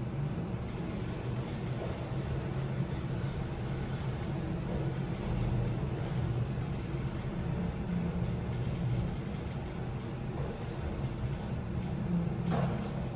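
Ride noise inside a KONE 3000 MonoSpace machine-room-less elevator car descending between floors: a steady low rumble with a faint high steady whine above it.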